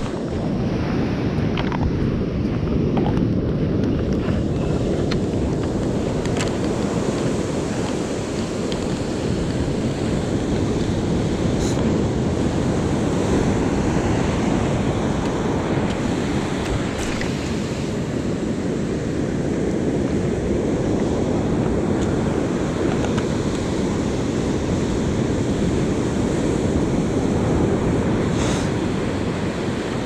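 Surf breaking and washing up a sandy beach, with wind rumbling on the microphone, steady throughout. A few faint clicks can be heard now and then.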